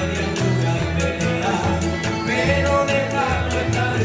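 Canarian folk string ensemble of guitars and small plucked strings strumming a lively, even rhythm over a steady bass line.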